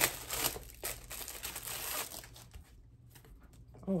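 Plastic wrapping being torn and pulled off a canvas wall print: crinkling and rustling, busiest for the first two and a half seconds, then thinning to a few faint crackles.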